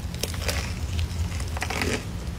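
Crunching and chewing of an extra-crispy KFC fried chicken sandwich on a toasted bun, a run of irregular crackles as the breading breaks.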